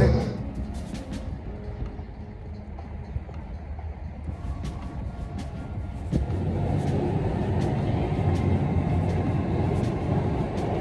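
Low, steady outdoor rumble with no clear single source, growing louder about six seconds in.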